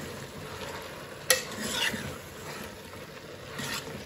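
Chopped mixed vegetables frying in a pot with a steady sizzle while a steel spoon stirs them, scraping and clinking against the pot; one sharp knock of the spoon on the pot about a second in.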